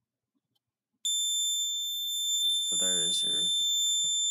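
Scantronic SC-800 alarm keypad sounding its entry-delay warning: a solid, continuous high-pitched tone that starts suddenly about a second in, set off by faulting a zone while the panel is armed.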